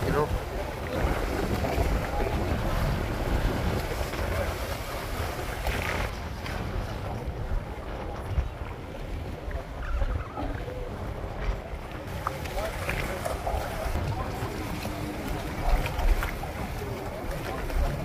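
Boat underway at sea: steady rushing wind on the microphone and water washing along the hull, over a low rumble, with faint chatter of passengers.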